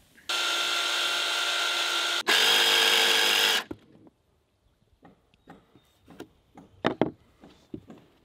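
DeWalt jigsaw cutting a composite deck board: two runs of steady motor-and-blade noise, the second louder, stopping a little over halfway through. After it come several light knocks of the cut board pieces being handled and set down on a wooden table.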